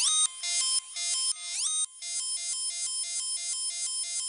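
Electronic music with the bass and drums gone: a thin, bright synthesizer line plays a few notes with upward pitch slides. It then settles into one short note repeated about three times a second, like a ringtone.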